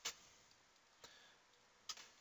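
Near silence broken by three short clicks about a second apart, the first the loudest: a computer mouse being clicked.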